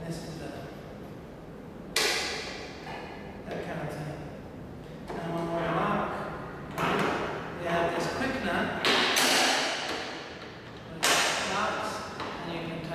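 Two sharp metallic clunks from the dry-cut saw's steel vise, about two seconds in and again near the end, as the ratchet lever knob and the quick-release vise lever are worked. A man talks between them.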